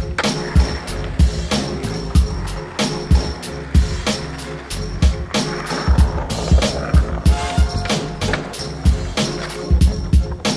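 Background music with a steady beat, mixed with skateboarding sounds: wheels rolling on concrete and the board popping and landing.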